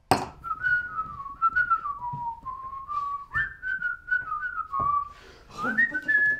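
A person whistling a tune, one clear note at a time with quick slides between notes, starting with a sharp click.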